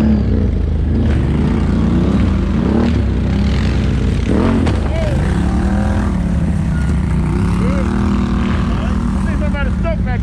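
Several Can-Am ATV engines running and revving, their pitch rising and falling unevenly as the quads pull through mud and up a dirt bank.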